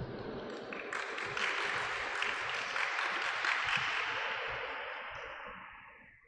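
Audience applauding: a patter of many hands that swells about a second in and fades out near the end.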